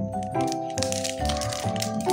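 Background music with steady pitched notes and a regular bass pulse. Over it, a KitKat's plastic film wrapper crinkles as it is handled, mostly in the second half.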